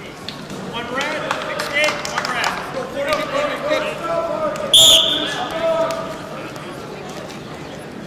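Spectators talking in a gym, with scattered sharp knocks, and one short, loud referee's whistle blast a little past halfway through, starting the wrestling bout.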